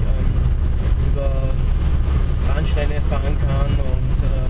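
Steady low rumble of a car's engine and tyres at road speed, heard inside the cabin, with a man's voice talking over it for much of the time.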